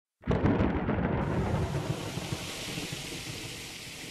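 Thunderstorm: a loud, low rumble of thunder starts suddenly just after the start. A steady hiss of rain joins about a second in.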